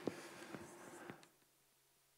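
Chalk on a blackboard: a few faint taps and strokes in the first second or so, then the sound cuts off.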